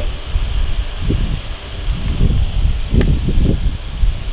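Low rustling and irregular bumping on the microphone, the noise of a hand-held recording being moved about, with one short click about three seconds in.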